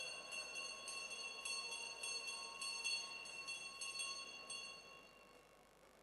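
A small bell rung rapidly and repeatedly, about three strikes a second, with a bright metallic ring. It stops about four and a half seconds in and rings away, over a faint held note.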